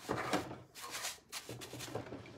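Paintbrush bristles brushing polyurethane onto a rusty metal milk can: a series of short, irregular brushing strokes, strongest in the first half-second.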